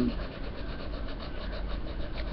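Coloured pencil rubbing and scratching on paper as a drawing is coloured in.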